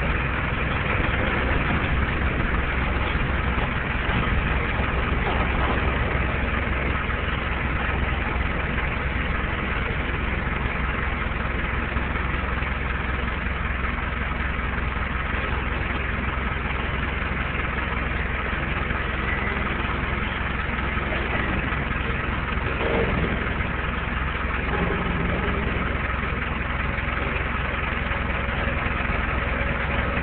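Forklift engine running steadily as it pushes a string of railroad boxcars.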